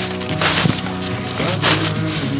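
Plastic sheeting crinkling in a few short bursts as it is handled and spread, over background music.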